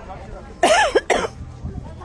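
A person coughing twice in quick succession, about half a second in; the two coughs are the loudest sounds.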